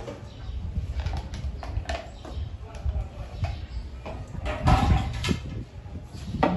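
Plastic containers being handled on a tabletop: scattered light knocks and clatter, busiest and loudest around four and a half to five seconds in.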